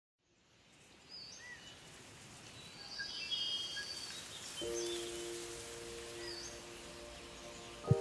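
Quiet outdoor ambience fading in from silence: a steady hiss with a few scattered bird chirps. A soft, sustained music chord enters about four and a half seconds in and holds.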